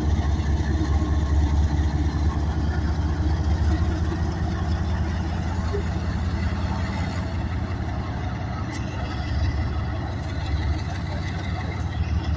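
A GE ES44AC diesel locomotive's V12 engine runs as the unit rolls past, a steady low drone that eases slightly as it moves away.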